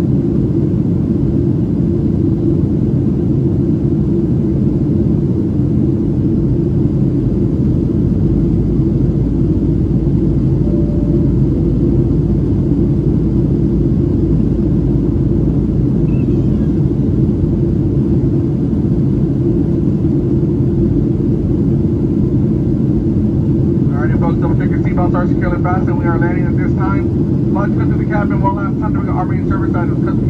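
Steady cabin noise of a Boeing 737-700 in descent: a low rumble of airflow and its CFM56-7B engines, heard from a window seat over the wing. People's voices join near the end.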